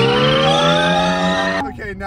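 Several men letting out one long rising 'whoa' together as an electric car accelerates hard. The cry cuts off suddenly about one and a half seconds in.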